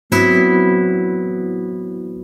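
A classical guitar chord plucked sharply just after the start and left ringing, several notes fading slowly together.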